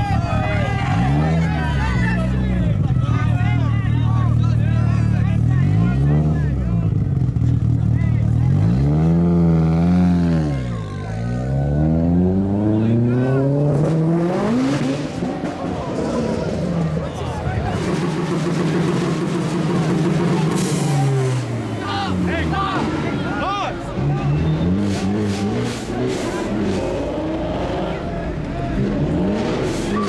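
A tuned car engine revved hard over and over through a loud aftermarket exhaust. Each rev climbs and drops back, in quick runs through the first ten seconds and again later on, with crowd voices underneath.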